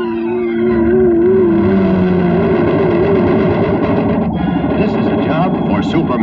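Dramatic orchestral cartoon score: a held, wavering note over a thick, building orchestra, with rising swells near the end.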